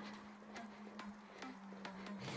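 Faint, regular footfalls of trainers landing on a hard floor while hopping in place, about two a second, over faint background music.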